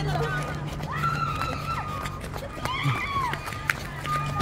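Distant voices calling out twice, over a steady low hum.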